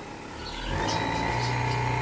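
Car alternator run as an electric motor from an electronic controller at 60 volts, spinning up: its electric whine rises in pitch and grows louder about half a second in, then holds steady at around 3,000 rpm.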